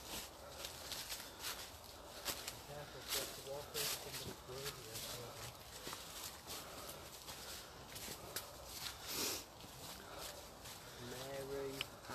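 Footsteps on a path littered with dry leaves and twigs: irregular rustling, crackling steps. Faint voices can be heard now and then.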